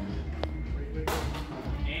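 Background music and voices in a large hall, with a sudden burst of noise about a second in that fades over most of a second.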